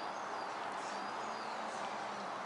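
Steady outdoor background noise: an even hiss with a faint low hum under it and no distinct events.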